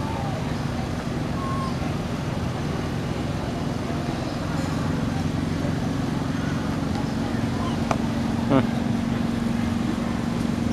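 Steady low hum of an engine running nearby, growing a little stronger partway through, over outdoor background noise with faint voices. A short high-pitched call rises above it about eight and a half seconds in.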